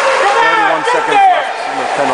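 Spectators' voices: several people talking and calling out at once, a man's low voice among them, over the steady background noise of the rink.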